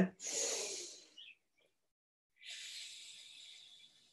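A man's deep, audible breathing during a breathing exercise: a breath drawn in through the nose just after the start, fading over about a second, then a quieter, steadier slow breath out from about two and a half seconds in, lasting over a second.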